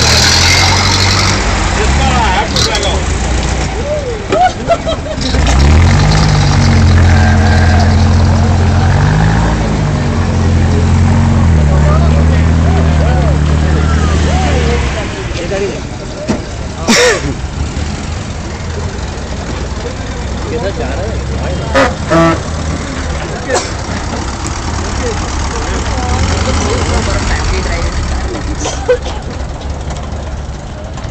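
Old car engines running as vintage cars roll slowly past, loudest about six to fifteen seconds in, with crowd chatter throughout. Two short horn toots come later, one past the middle and one a few seconds after.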